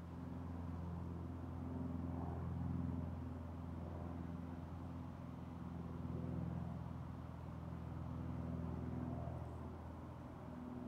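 Low, sustained ambient drone of background music, a held chord whose upper notes come and go every few seconds while the whole sound slowly swells and eases.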